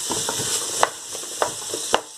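Diced vegetables sizzling in hot rapeseed oil in a stainless steel pot as they are sweated, stirred with a wooden spoon that knocks against the pot about three times.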